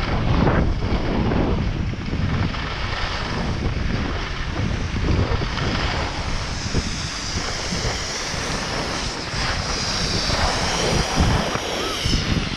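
Wind buffeting the microphone during a downhill ski run, a gusty low rumble over the steady hiss and scrape of skis on groomed snow. A faint wavering high whistle joins in the last few seconds.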